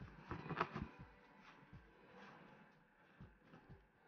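Faint rustling and small clicks of macrame cord being handled: thin jute cord drawn and looped around a bundle of braided cotton cords by hand. The handling noise comes in a brief cluster about half a second in, then in a few scattered ticks.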